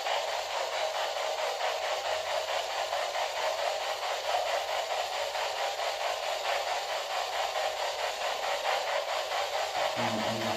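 Radio static hissing steadily, with a rapid, even pulsing all the way through.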